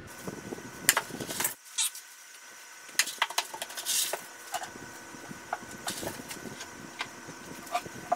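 Plastic scoop digging loose coconut-fibre substrate out of a glass tank: irregular scrapes, rustles and light clicks against the glass, with a brief louder rustle about four seconds in.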